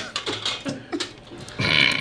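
Short, low non-speech vocal noise from a man about one and a half seconds in, after quieter mumbling.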